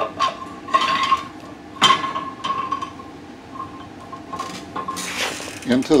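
Steel-on-steel clinks and scraping as a steel cross pin is pushed through the hole in a welding turntable's pipe shaft: a few sharp clinks in the first two and a half seconds, with the pipe ringing on in a thin, steady high tone that fades out near the end.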